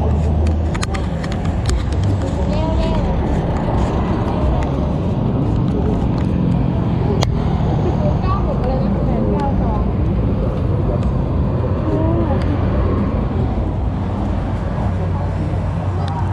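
Street traffic on a busy road: motorbikes and cars going by, making a steady low rumble, with people's voices faint underneath.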